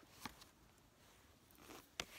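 Near silence with a few faint clicks of tarot cards being handled and drawn from a deck: one soon after the start and a sharper one near the end.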